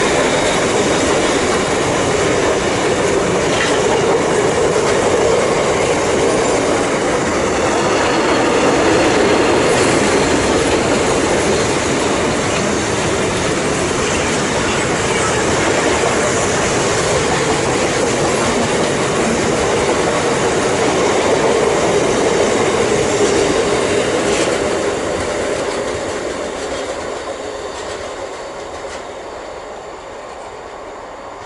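Freight train of bogie tank wagons running past close by: a steady, loud rumble and rattle of wheels and bogies on the rails. It fades over the last few seconds as the train draws away.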